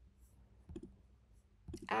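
A quick double click of a computer mouse, a little under a second in, made while working a resume-builder web page. A woman starts speaking just before the end.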